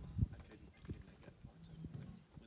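A single sharp knock about a quarter second in, followed by a few faint clicks and knocks.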